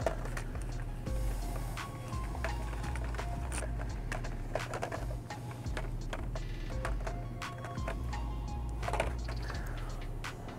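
Music with a low bass line that steps in pitch every second or so. Scattered light clicks and plastic rattles run under it, from blister-packed Matchbox cars being flipped on metal peg hooks.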